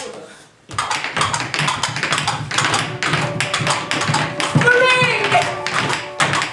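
Feet tapping and stamping on a wooden stage floor in a group dance routine, a quick, uneven run of sharp taps starting about a second in. A voice calls out briefly near the end.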